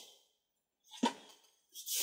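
Mostly quiet, with one short knock about a second in and a brief rustle of handling noise near the end.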